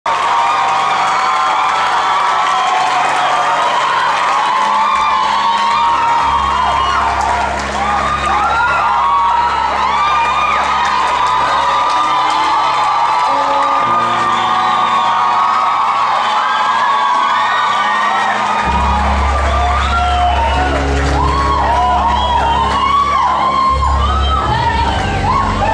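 Live church worship music: a band holds long low chords that change every few seconds, under a crowd of many voices cheering and calling out.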